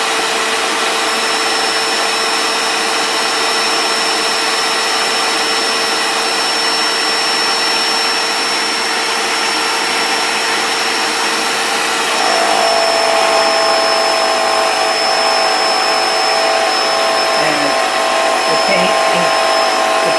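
Graco Magnum X5 airless paint sprayer's electric piston pump running steadily in prime mode, drawing paint up the suction tube and out the drain tube. About twelve seconds in, its note shifts higher and it gets slightly louder.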